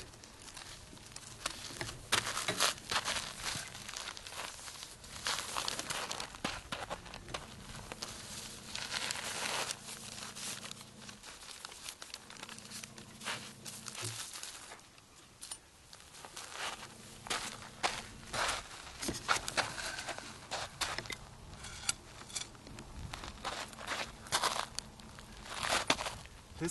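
A large sheet of wet rice paper rustling and crinkling as it is lifted and slid off a straw mat onto gravelly ground, with irregular crunching from the gravel under it. The sound is broken into scattered crackles, with a brief lull just past the middle.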